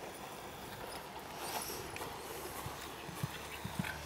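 Hoofbeats of a trotting horse on a sand arena surface: soft, muffled thuds, most distinct in the second half.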